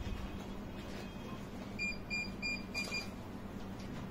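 Four short, high electronic beeps in quick succession, about three a second, over a faint steady low hum.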